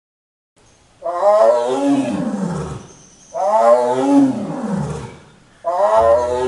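A big cat roaring three times, each long roar falling in pitch toward its end, starting about a second in; the third runs on past the end.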